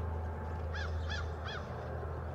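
A bird calling three times in quick succession, about a second in.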